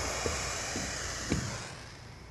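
A steady hiss that fades away over about a second and a half, with two faint taps.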